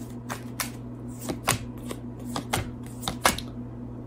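A deck of tarot cards being shuffled by hand: a string of irregular light card clicks and flicks, thinning out near the end. A steady low hum runs underneath.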